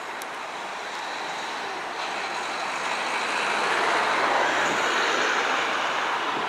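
Tyne and Wear Metrocar electric train approaching at speed: its running noise of wheels on rail grows steadily louder, peaking about four to five seconds in.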